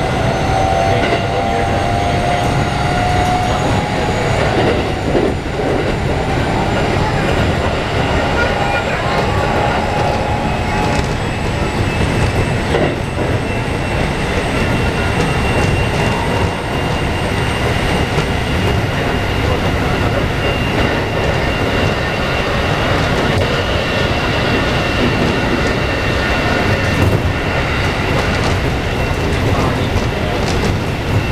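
Keikyu 1500 series commuter train heard from inside a passenger car while running between stations: a loud, steady rumble of wheels on rail, with a faint steady whine from the Mitsubishi IGBT-VVVF inverter drive.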